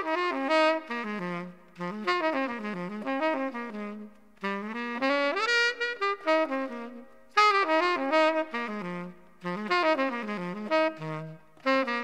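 An unaccompanied jazz saxophone plays a melody in short phrases separated by brief pauses, with no rhythm section behind it.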